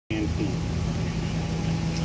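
A steady low hum with a faint murmur of voices, before any music starts.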